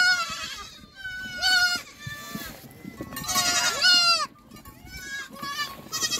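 A herd of goats bleating in a pen: several wavering bleats, some overlapping, the loudest a pair about three to four seconds in.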